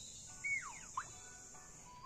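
Steady high-pitched insect drone, with two short whistled calls about half a second in: one falling in pitch, then a quick rising one. The drone stops just before the end.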